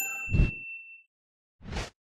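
Outro sound effects: a bright bell-like ding that rings out for about a second, with a short whoosh just after it and another whoosh near the end.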